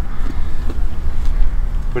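Wind buffeting an outdoor microphone: a steady, loud low rumble.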